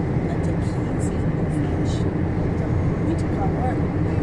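Steady low rumble of a car driving, heard from inside the cabin: engine and road noise at an even level.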